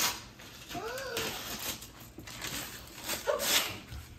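Wrapping paper being ripped off a gift box in several tearing pulls, the loudest near the end. A brief high rising-and-falling vocal sound comes about a second in.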